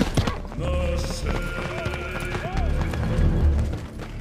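A horse's galloping hoofbeats thud in clusters on soft ground, with film-score music of long held notes coming in about half a second in.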